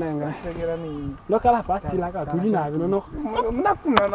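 Speech: a man talking in Oshiwambo, with short pauses, over a steady high-pitched hiss.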